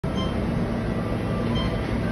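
Steady low rumble with a faint hum: background noise, with no clear event in it.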